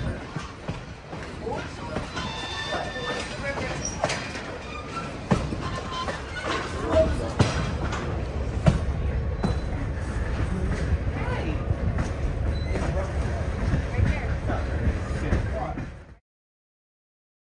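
Passenger train rolling along the track, heard from an open-air car: a steady low rumble of wheels with sharp clicks from rail joints and brief thin wheel squeal. Passengers' voices are heard in the background. The sound cuts off suddenly at the end.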